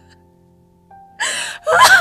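A quiet background-music bed of sustained tones. About a second in, a voice takes a breathy, gasp-like breath, and near the end it breaks into loud voiced sounds with a bending pitch.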